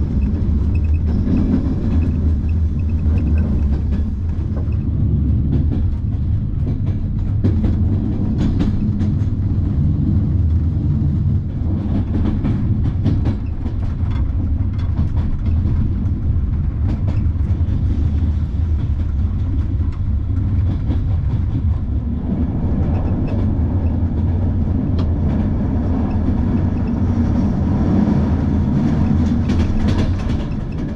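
Passenger train carriage running at speed on the rails, heard from inside: a steady low rumble with scattered clicks from the wheels over rail joints.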